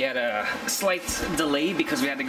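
Speech only: a man's voice talking close to the microphone.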